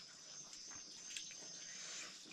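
Faint, steady high-pitched chirring of insects, with a couple of soft clicks about a second in.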